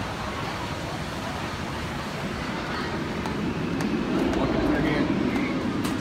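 Steady rushing water from a river-rapids raft ride, with indistinct voices over it.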